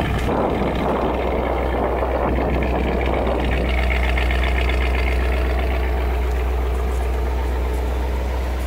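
1956 Cadillac Sedan DeVille's 365 V8 idling steadily, heard close to the bumper exhaust outlets, running well now on its rebuilt fuel pump. The idle settles smoother about halfway through.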